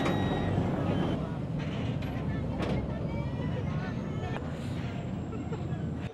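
River ferry engine running with a steady low rumble as the boat pulls in to dock, with passengers' voices faint over it.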